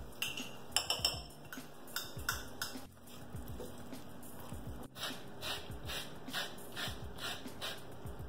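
A wooden spoon stirring and scraping a vegetable and tomato sauce in a stainless steel skillet: a series of short scraping knocks, coming fairly regularly about two to three a second in the second half.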